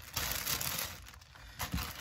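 Clear plastic polybag crinkling and rustling as it is handled, strongest at the start, dying down, then briefly again near the end.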